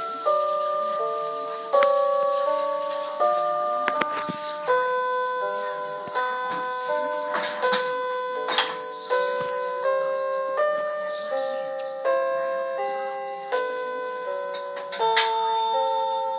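Toy electronic keyboard playing a slow melody of short electronic notes, about one and a half a second, each starting sharply and fading, with faint key clicks between them.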